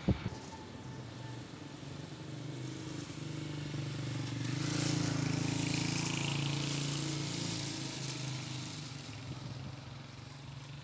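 A motor vehicle passing along the street: its engine hum grows louder to a peak about halfway through, then fades away, over steady outdoor street noise.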